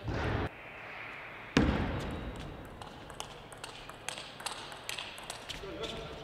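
Table tennis ball bouncing in a series of light, irregular clicks through the second half. Earlier there is a brief loud burst of noise at the start and a sudden loud thump about a second and a half in, the loudest sound.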